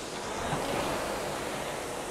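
Concept2 RowErg's air-resistance flywheel fan whooshing steadily, swelling a little as a drive stroke spins it up.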